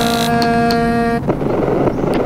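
Experimental electronic music: a held, pitched synthetic tone with many overtones cuts off a little past a second in and gives way to a rough, grainy noise texture.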